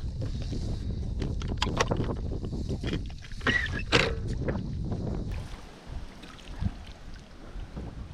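Wind rumbling on the microphone aboard a small boat drifting with its electric motor dead, with a few sharp knocks and clatters of gear being handled, the loudest about four seconds in.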